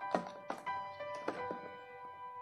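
Background music of sustained notes, over a few sharp knocks and handling sounds as a cardboard martabak box is slid out of its sleeve and put down on a glass table; the loudest knock comes just after the start.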